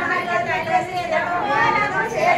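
A group of women's voices overlapping, chatter mixed with drawn-out sung notes.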